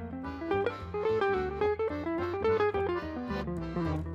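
Small jazz band's instrumental break: an archtop guitar plays a moving melody line over bass.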